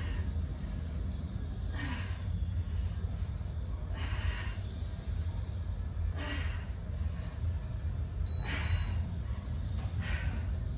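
A woman's hard exhaled breaths, one about every two seconds, each with a crunch of her workout, over a steady low rumble.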